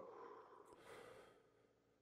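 Near silence, with a faint breath let out about half a second in, from someone demonstrating deep belly-and-chest breathing.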